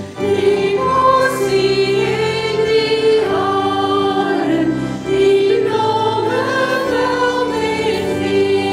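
Live church worship song: women's voices singing into microphones, holding long notes, over electric bass and band accompaniment.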